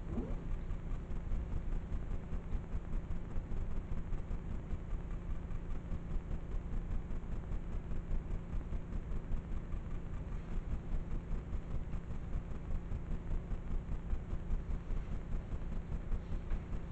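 Room tone: a steady low rumble with no voices.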